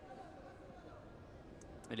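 Faint football-stadium ambience with distant voices during a lull in the commentary; a commentator starts speaking right at the end.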